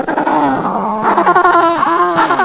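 Loud, eerie moaning sound effect: several pitched tones waver and glide up and down together.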